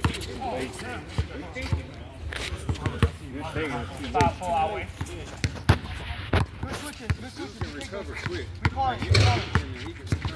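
A basketball bouncing on an outdoor hard court in a pickup game, a series of irregular sharp thuds, with players' voices in the background.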